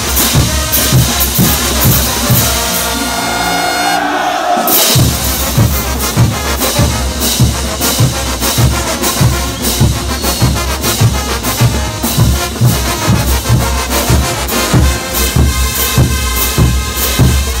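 A morenada brass band playing live: bass drums and crash cymbals keep a steady marching beat under held brass notes. About four seconds in the drums drop out for about a second while the brass holds, then the beat comes back in.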